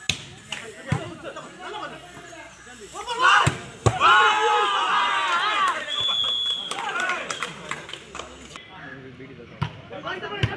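A volleyball is struck by hand several times, giving sharp smacks. The loudest part is a stretch of shouting from players and spectators in the middle.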